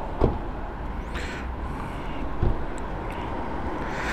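Zontes 350E scooter's single-cylinder engine idling steadily, with a couple of light knocks over it.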